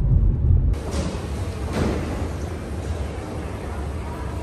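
Low road rumble inside a car cabin, cut off abruptly under a second in. It gives way to the steady background hubbub of a busy airport terminal.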